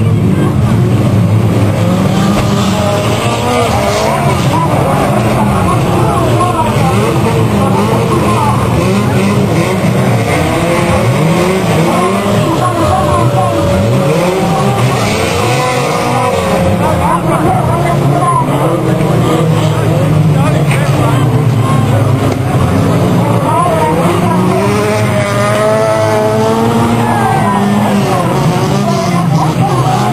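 Banger-racing cars running round the track together, several engines revving up and down at once.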